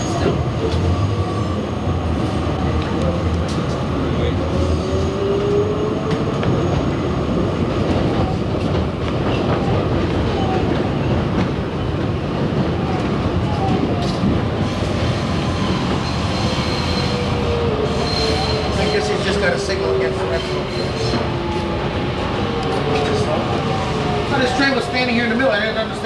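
Kawasaki R110A subway train running on elevated track: a steady rumble and wheel clatter, with a whine that rises in pitch as the train picks up speed and falls again in the second half as it slows.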